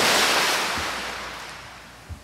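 A loud rushing hiss, like a crash or whoosh, that comes in suddenly and fades away steadily over about two seconds.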